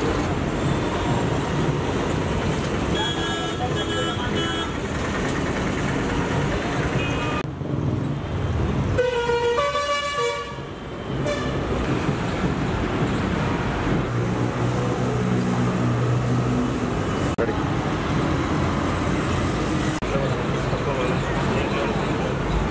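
Steady street traffic noise with vehicle horns honking, once a few seconds in and again about halfway through.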